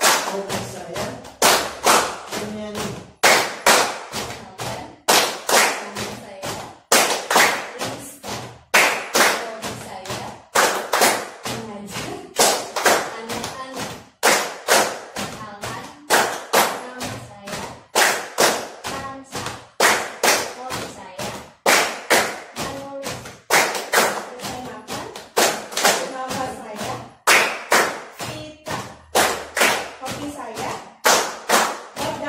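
A group of people clapping their hands in a steady repeated rhythm, with voices singing or chanting along.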